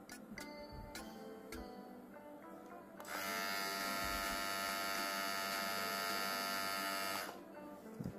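VGR V961 cordless hair trimmer switched on about three seconds in, its motor and blade running steadily for about four seconds before it is switched off. Faint background music plays before it starts.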